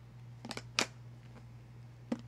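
Two short, light plastic clicks as a plastic fork and lunch container are handled, the second one sharper, over a faint steady low hum.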